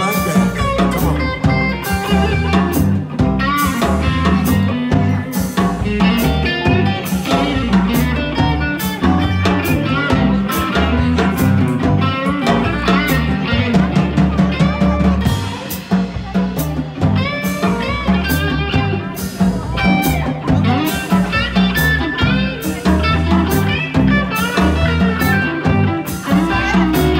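Live electric blues band playing an instrumental break without vocals: electric guitar over bass, drum kit and keyboard, with a steady beat.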